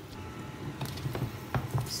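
A plastic spatula stirring and scraping a thickening grated-tapioca and coconut-milk batter in a non-stick frying pan, with a few soft taps against the pan.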